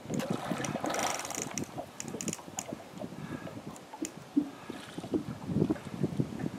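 River water sloshing and splashing, with wind on the microphone and scattered light clicks and knocks.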